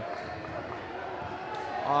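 Steady gymnasium background noise during a basketball game: a general murmur of players and spectators echoing in a large hall. A man's voice begins speaking near the end.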